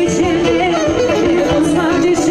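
Live dance music: a woman singing into a microphone, her melody wavering and heavily ornamented, over a band with a steady beat.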